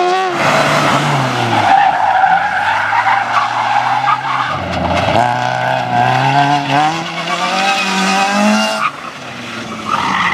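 A small car's engine revving hard through tight slalom turns, with tyres squealing and skidding on tarmac. The engine note sags, then climbs steadily from about five seconds in before easing off near the end.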